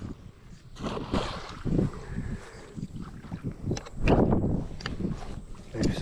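Wind buffeting the microphone in uneven gusts, with scattered rustling and a few light knocks of handling noise.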